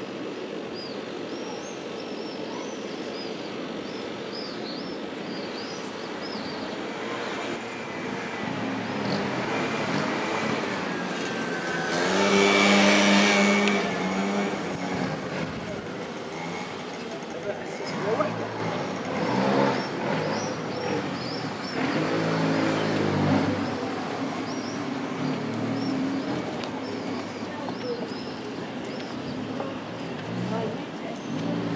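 Street ambience: small birds chirping, a car driving past about twelve seconds in as the loudest sound, and passers-by talking in the second half.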